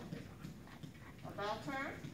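Footsteps of a handler and her heeling dog on rubber floor matting, with a short spoken word from a voice about one and a half seconds in.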